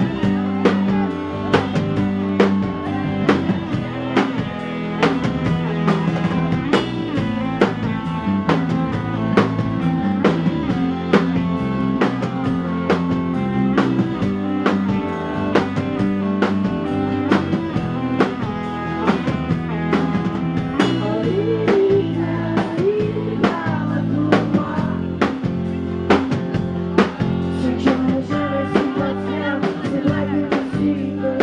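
Live rock band playing: a steady drum beat under electric guitar and a strummed acoustic guitar.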